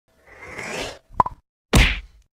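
Intro logo sound effects: a rising whoosh, two quick pops a little over a second in, then a heavy hit with a deep boom near the end that dies away.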